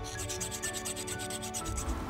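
Hand file rasping along the edge of a small metal spoon-lure blank in quick, evenly spaced strokes that stop just before the end. Background music plays underneath.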